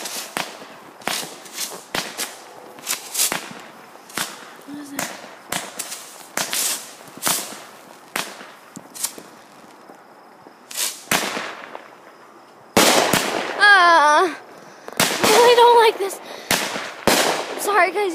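Aerial fireworks finale: sharp bangs and crackles go off about one or two a second, then about thirteen seconds in they break into a much louder, denser barrage. A loud, wavering high-pitched wail rises over the barrage.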